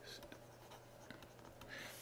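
Faint scratching and light ticks of a stylus writing on a tablet.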